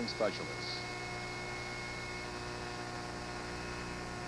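Steady mains hum on the broadcast audio during dead air: an even buzz of stacked tones, with a faint thin high tone over it that stops about two seconds in.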